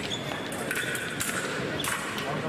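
Sports hall ambience: a murmur of voices with scattered faint clicks and knocks. A thin, high, steady tone sounds for about a second, starting partway in.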